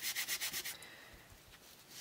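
A small piece of sponge rubbed quickly back and forth along the edge of cardstock, sponging ink onto the paper border in rapid scratchy strokes, about nine a second. The strokes pause for about a second midway, then start again near the end.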